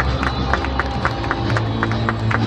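Lineup-introduction music played over a stadium PA, with a steady bass and a sharp beat about four strokes a second. A crowd applauds and cheers underneath.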